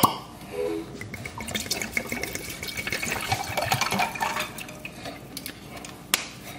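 Water running or being poured and splashing, with many small ticks and drips throughout.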